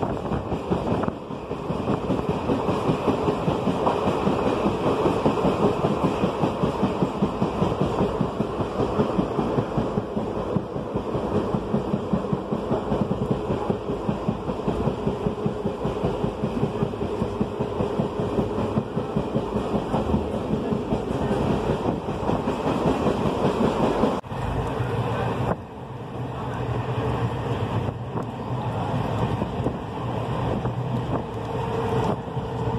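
A passenger train running at speed, heard from inside the coach by an open window: a steady rumble with rapid, regular clatter of the wheels over the rails. Near the end, after a brief dip, a steady low hum joins in.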